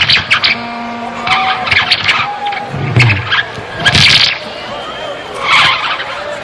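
Live rock band on stage playing loosely rather than a steady song: irregular loud crashes about once a second, with held and squealing guitar tones between them.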